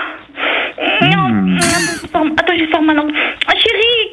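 Exaggerated, theatrical moaning, gasps and sighs from voices, mostly heard narrowed as over a telephone line. There is a falling groan about a second in, followed by a brief breathy hiss.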